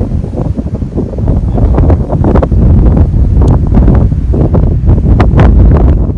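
Wind buffeting the microphone: a loud, low rumble with scattered crackling pops, growing louder about two seconds in.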